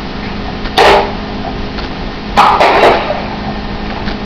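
Glass bottle being broken, with pieces of glass dropped into a bag-lined trash bin: a sharp, noisy burst about a second in and a second, longer cluster of clatter about two and a half seconds in.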